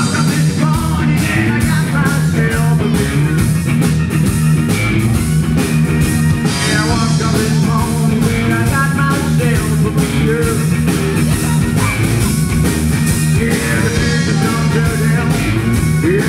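Live rock band playing loud through the stage PA: electric guitar, bass guitar and drum kit, with a steady driving drum beat and no sung words.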